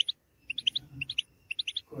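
European goldfinch chirping in its cage: short, high chirps in quick little clusters, about one cluster every half second.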